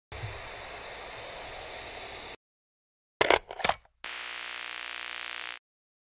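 Edited-in intro sound effects. First comes a steady hiss that cuts off abruptly after about two seconds. Then a few loud, sharp clicks, followed by a shorter steady hiss with a low hum that also stops abruptly.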